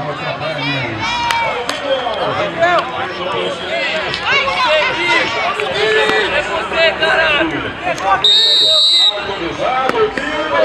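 Players and spectators chattering and calling out over one another. Near the end comes one steady, shrill referee's whistle blast about a second long, the signal for the penalty kick to be taken.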